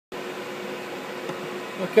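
Steady hum with two steady tones from a powered-up Haas CNC mill standing idle, its spindle not yet turning.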